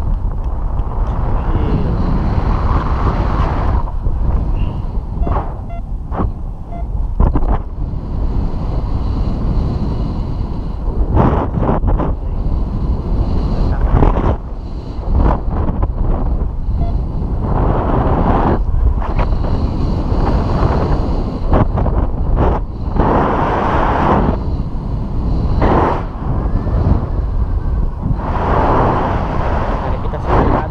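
Airflow from paraglider flight buffeting the camera microphone: a loud, continuous low rumble that swells and drops in irregular gusts.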